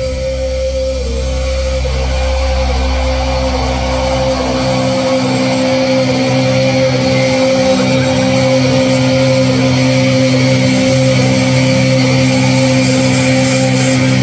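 Heavy metal band playing live, with long sustained, ringing guitar notes over the drums; a deep low bass note cuts out about five seconds in.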